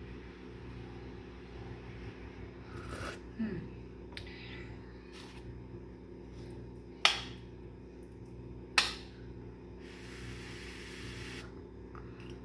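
Metal spoon clinking and scraping on a ceramic plate and bowl while eating, with two sharp clinks about a second and a half apart midway and a few lighter taps earlier. A steady low hum runs underneath.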